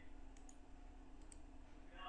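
A few faint, sharp clicks from a computer mouse over near-silent room tone.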